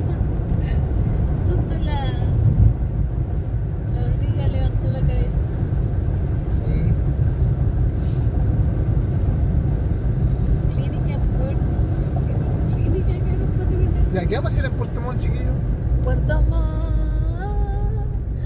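Steady low road and engine rumble heard from inside a moving car.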